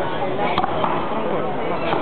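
Axe chopping into a log in a horizontal underhand cut, a couple of sharp blows biting into the wood over a steady crowd murmur.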